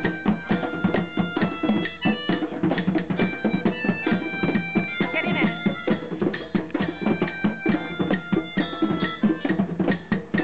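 Street band of hand drums and a frame drum keeping a fast, steady rhythm, with held melody notes from a violin and a flute played over it.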